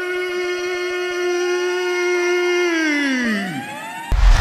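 A sustained electronic chord of steady tones, held level, then sliding down in pitch and fading out over the last second: a pitch-drop transition effect.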